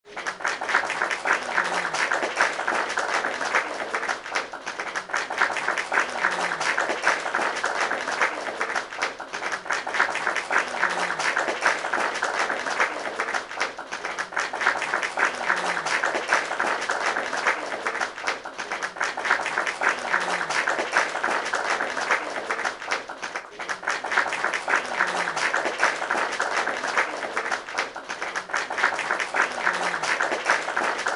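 Steady applause: many hands clapping in an even, dense patter throughout, with a faint low sound that dips in pitch about every five seconds.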